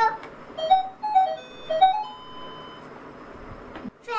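Electronic tune from a children's toy learning laptop: a few short beeping notes stepping up and down in pitch, then one long held tone lasting nearly two seconds.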